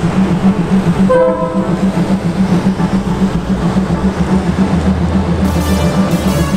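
Passenger train running along a station platform, heard from on board, with a steady pulsing rumble and a short horn blast about a second in.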